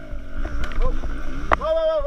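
A man's voice calling out, ending in a long, high-pitched shout, with a single sharp click about one and a half seconds in.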